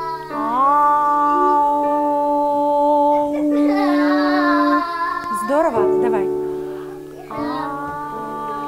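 A child singing long held vowel notes over sustained chords on a digital piano. One long note holds for about four seconds, then the voice glides quickly up and down, and another held note begins near the end.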